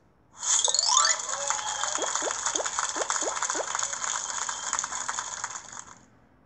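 A mobile game's celebration sound effect for a solved puzzle. A quick rising sweep leads into a bright, sparkling fizz, with a run of about six short falling blips in the middle, and it fades out after about five seconds.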